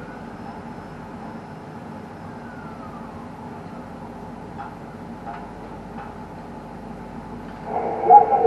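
Steady mechanical hum inside a tower crane cab, with a faint whine that rises then falls over the first few seconds and a few light ticks, as the crane's drives move the glass panel.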